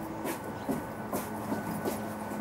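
A loud machine running with a steady hum, with short knocks about every half second that fit boot steps on a wooden deck.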